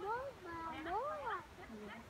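A person calling out in drawn-out, sing-song tones, the pitch swooping up and down twice, urging a dog on over an agility course.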